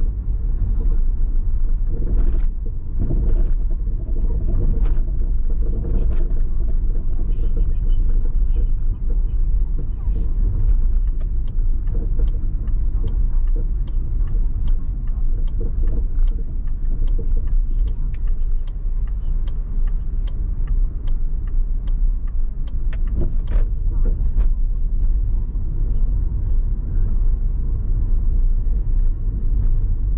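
A car driving on city streets: a steady low rumble of road and engine noise, with scattered sharp ticks and knocks throughout, louder ones a few seconds in and about three-quarters of the way through.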